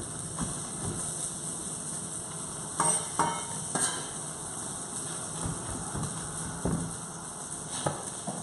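Chef's knife knocking on a thick end-grain wooden chopping board as a red chilli is sliced thin, a few irregular knocks. Behind it a steady sizzle of salmon frying in a pan.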